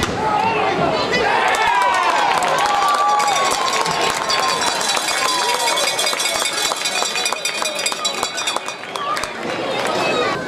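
Crowd and players cheering and yelling, with many voices rising and falling at once and scattered clapping. The shouting is strongest in the first few seconds.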